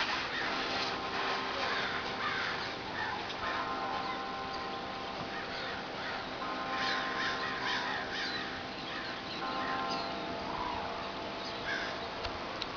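Birds calling off and on in the background, short rising and falling chirps scattered throughout, over a steady hum with a few held tones that come and go.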